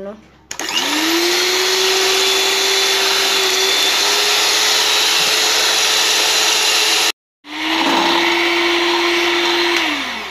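Electric hand mixer whipping egg whites in a glass bowl. The motor spins up about half a second in and runs at a steady pitch, breaks off suddenly for a moment around seven seconds, starts again and winds down near the end.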